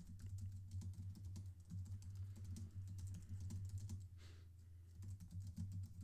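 Faint computer keyboard typing: a rapid run of key clicks that pauses briefly about four seconds in, then resumes, over a steady low hum.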